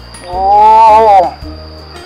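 A man's drawn-out exclamation, "oh", lasting about a second, over background music with steady low bass notes.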